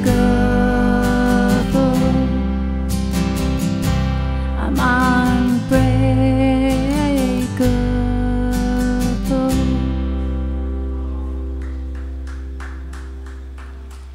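The closing bars of a live acoustic song: strummed acoustic guitar chords with a woman's voice holding long notes. About ten seconds in, a last strummed chord is left to ring out and fades away over the final few seconds.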